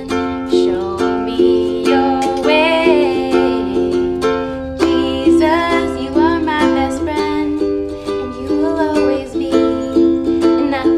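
Ukulele strummed in a steady rhythm, with a woman singing a children's song over it.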